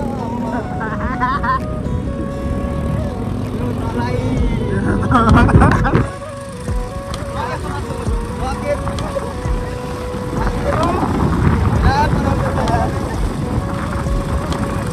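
Motorcycle running along a rough dirt track, with wind rush on the microphone, under music and a voice that come and go.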